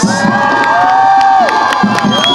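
Cheering and whooping from several voices, some held as long, steady shouts lasting over a second.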